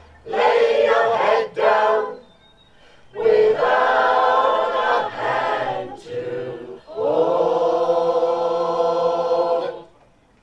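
Mixed community choir of men and women singing the closing phrases of a song, pausing briefly, then ending on one long held final chord that cuts off just before the end.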